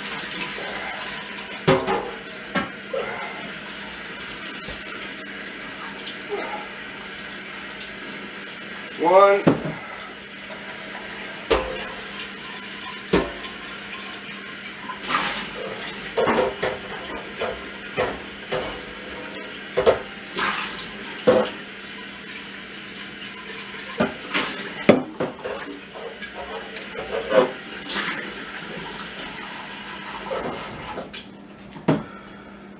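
Kitchen tap running into the sink while glass jars are rinsed, with frequent short clinks and knocks of glass against the sink and other jars.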